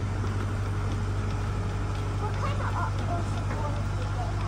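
Resort launch boat's engine running at a steady low hum under way, with water noise, and faint voices of passengers partway through.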